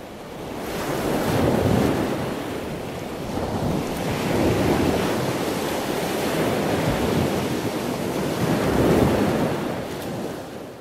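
Ocean surf: a rushing noise of breaking waves that swells and eases every few seconds.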